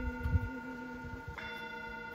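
Singing bowl ringing, several steady tones sustained together, then struck again a little over a second in. A few low thumps come near the start.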